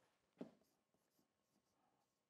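Near silence: a brief soft sound about half a second in, then a few faint ticks, from a stylus writing figures on an interactive touchscreen whiteboard.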